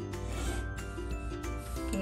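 Felt-tip marker drawn along a curved metal ruler across pattern paper, in short rubbing strokes, over steady background music.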